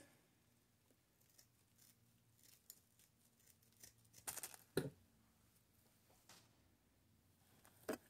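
Scissors faintly snipping off excess deco mesh: a few scattered short snips, the loudest pair a little past the middle.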